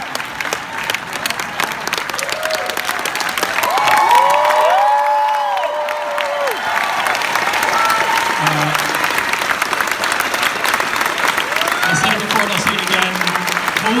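Large audience applauding and cheering, with whoops rising over the clapping and loudest about four to six seconds in.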